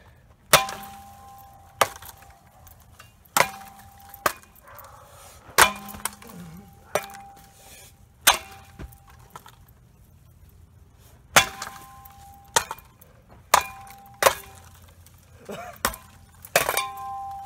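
About a dozen sharp, irregularly spaced wooden clacks as a board strikes the spinning blades of a Hampton Bay Littleton ceiling fan. Several of the hits leave a short ringing tone.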